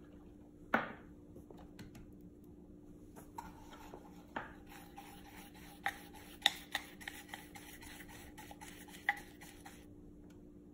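A dauber brush swirled in an open metal tin of saddle soap, its bristles scrubbing the wet soap to work up a lather, with small clicks of the brush against the tin. A sharp knock comes about a second in, and the scrubbing gets busier about halfway through.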